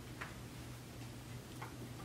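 Quiet room tone in a pause: a steady low hum with two faint short ticks, about a second and a half apart.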